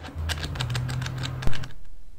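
A fast clatter of sharp clicks, like keys being typed, over a steady low hum, ending in one loud thump about one and a half seconds in.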